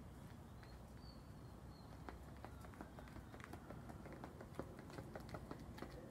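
Faint sneaker footsteps on a concrete sidewalk: quick, uneven taps and scuffs of sideways ladder-drill footwork, picking up about two seconds in.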